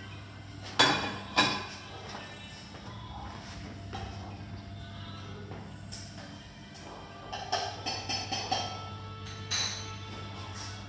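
Two sharp clinks of crockery or cutlery about a second in, over a steady low hum, with a few more lighter clinks and knocks near the end.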